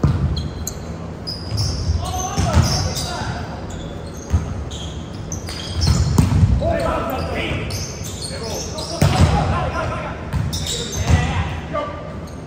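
Indoor volleyball rally on a hardwood gym floor: sneakers squeak in short high chirps, the ball is struck and feet land with thuds, and players shout, all echoing in a large hall. The loudest, busiest stretch comes about halfway through, as players jump at the net.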